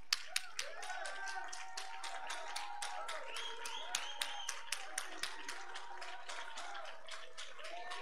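Congregation clapping in a quick, steady rhythm for a praise break in a Pentecostal service, with faint voices calling out over the claps.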